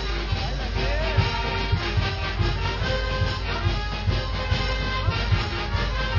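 Band music with a steady beat and held notes, accompanying a rope-walking act.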